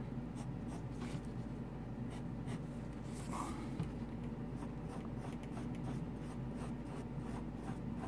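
Mechanical pencil lead scratching on paper in many short strokes, sketching the edges of a box and an ellipse inside it.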